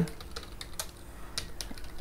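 Computer keyboard typing: a run of irregular, quick keystrokes.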